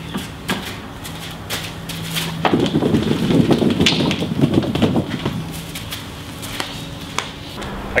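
A dried, stiff deer hide stapled to a wooden frame being handled and lifted: scattered light knocks and clicks, with a louder rustling scrape of the hide and frame for a couple of seconds in the middle, over a faint low hum.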